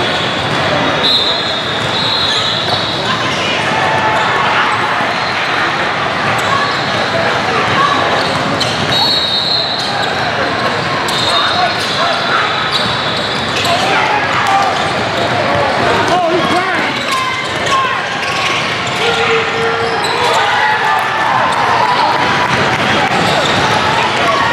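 Basketball game noise in a large, echoing hall: basketballs bouncing on the hardwood court and a babble of players' and spectators' voices, with brief high squeaks coming and going.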